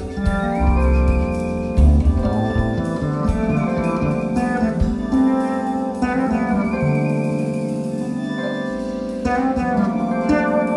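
Jazz quartet playing live: violin carrying long, sustained melody notes with slight slides over keyboard, electric bass guitar and drum kit.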